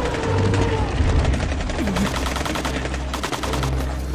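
A rapid, evenly spaced clicking rattle over a steady low rumbling drone, as in a film's suspense sound design.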